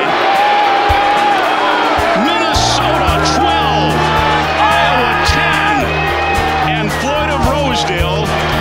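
Excited shouting and cheering from celebrating football players, over background music. The music's steady bass comes in about two and a half seconds in.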